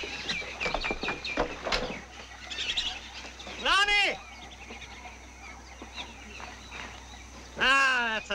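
Jungle soundtrack ambience of bird and animal calls: quick, repeated chirps at first, then a loud call that rises and falls in pitch about four seconds in, and another loud call near the end that starts a series of falling calls.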